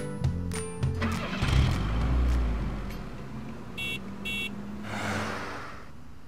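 A short music cue ends about a second in, followed by end-card sound effects: a low rumble that swells and fades, two short high beeps about half a second apart, then a brief whoosh.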